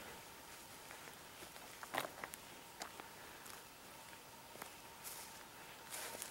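Faint footsteps on raked bare soil and woody debris: a few soft, scattered steps, the clearest about two seconds in.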